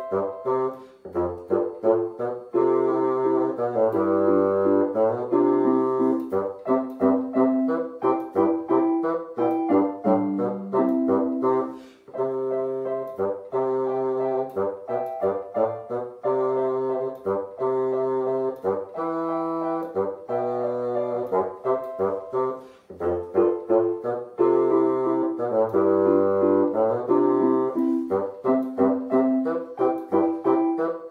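Bassoon playing a simple beginner-grade solo melody in held notes, accompanied by an electronic keyboard. The music breaks briefly between phrases about 12 and 23 seconds in.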